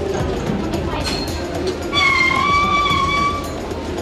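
The bell of a large hand-turned prayer wheel ringing once about two seconds in, a clear tone held for over a second before it fades, over a background of voices.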